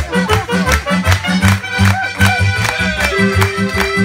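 Live accordion and clarinet playing a lively traditional dance tune, the accordion's bass keeping a steady, even beat under the melody.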